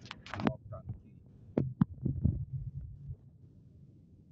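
A handful of sharp knocks and thumps in the first two and a half seconds, over a low steady hum that drops away about three seconds in.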